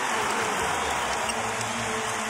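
Steady crowd noise from a packed basketball arena's spectators, an even wash of many voices with no single sound standing out.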